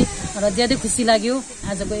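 Speech: a person talking in a room.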